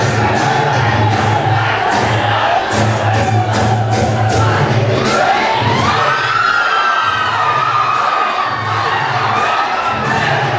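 Loud dance music with a heavy bass beat, with an audience cheering and whooping over it. The bass drops out for about two seconds past the middle, then comes back.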